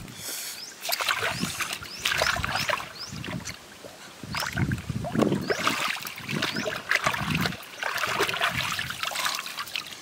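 Water splashing and sloshing in irregular bursts as a large fish is hauled out of a shallow stream on a stick, its body dragging through and slapping the water.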